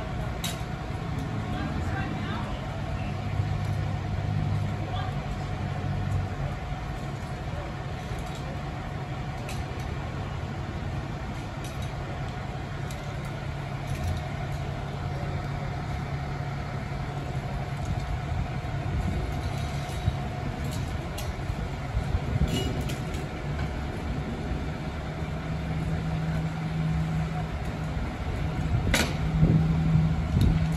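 Fire trucks' diesel engines running at idle: a steady low hum, with a few light clanks of equipment now and then.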